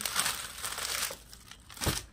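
Rustling and crinkling of folded suit fabric being handled for about the first second, then a single soft thump near the end as a folded suit is set down on the cloth-covered floor.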